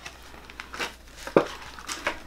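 A thin clear plastic sheet of punch-out letters being flexed and handled, crinkling, with a few light sharp clicks, the loudest just past halfway.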